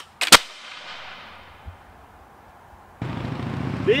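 A ragged volley of flintlock black-powder muskets: three sharp reports within about a third of a second, the last the loudest, echoing away over about a second.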